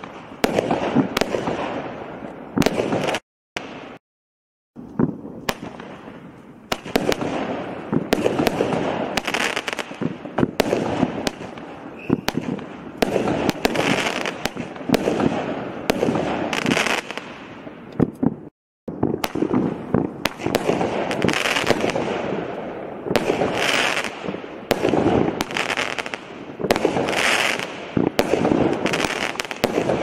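Consumer firework barrage cakes (8-shot cakes) firing: sharp reports in rapid, uneven succession, each one trailing off. The sound breaks off into silence twice, a few seconds in and again about two-thirds of the way through, before the shots resume.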